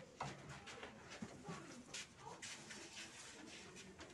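Faint footsteps and shuffling in a quiet hall: soft scattered taps over low room noise.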